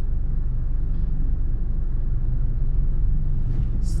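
Steady low engine and road rumble heard inside the cabin of a moving car.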